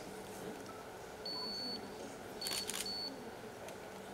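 Digital cameras photographing: a short high autofocus beep, the sign of focus lock, about a second in, then a quick run of shutter clicks with two more short beeps a little past halfway.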